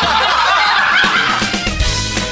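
Laughter over background music, with a heavy bass beat coming in about one and a half seconds in.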